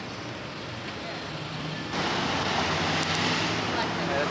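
Outdoor street ambience: steady traffic noise with faint voices, until a louder rushing hiss sets in suddenly about halfway through.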